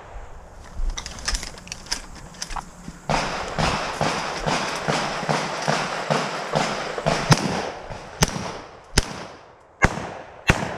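Gunfire: a few shots in the first couple of seconds, then, after a stretch of footsteps and rustling through dry leaves, a string of loud shotgun shots just under a second apart over the last few seconds.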